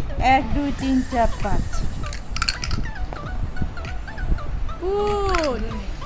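Household game sounds: brief voices, a few quick clicks of plastic game pieces or a die, and one drawn-out vocal call that rises and then falls in pitch a little before the end.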